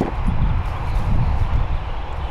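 Gear being handled in a plastic storage tote: a sharp click at the start, then soft knocks over a steady low rumble.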